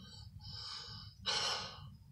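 A man's breath: a faint breath early on, then a louder breath about a second and a quarter in that lasts about half a second.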